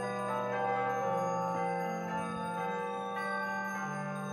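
Slow instrumental music of held chords with a bell-like, chiming tone, the chords changing every second or so.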